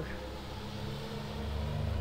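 Steady low background hum with a faint hiss between spoken words, the hum growing a little stronger in the second second.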